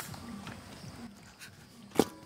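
Wax gourd pieces being handled in a metal bucket of water, with a sharp knock at the start and another near the end. Low, short calls repeat in the background.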